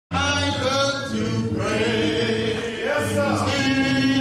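A group of voices singing a cappella, holding long notes. The singing cuts in suddenly at the very start.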